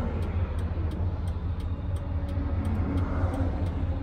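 Steady low rumble of a Roadtrek camper van's engine and road noise, heard from inside the cab while driving.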